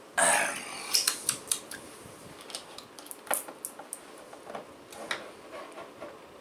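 A short breathy hiss from a person at the start, then a scattering of small sharp clicks and taps.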